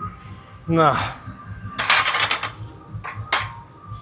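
A man's strained grunt falling in pitch about a second in, then the metallic clatter and clank of a loaded barbell's iron plates as the bar is set down on the floor at the end of a bent-over row set, with one sharp clank a little after three seconds.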